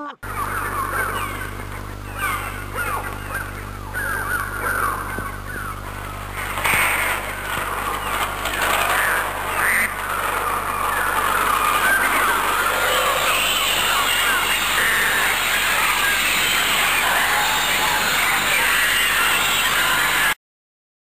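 A dense, chattering flock of bird calls and screeches, many short falling cries overlapping, growing thicker and louder from about six seconds in, over a steady low hum.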